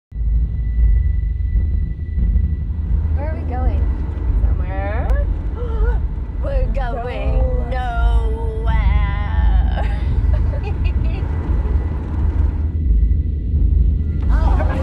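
Dark, droning low rumble of a horror trailer soundtrack with a thin steady high tone in the first couple of seconds. From about three seconds in until about ten seconds, a woman's wordless, wavering vocal sounds rise and fall over the drone.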